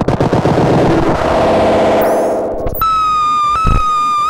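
BugBrand modular synthesizer putting out a fast, rattling stream of clicks and pulsing buzz, broken by a high swooping glide, then settling about three seconds in into a steady high-pitched tone that steps slightly in pitch once.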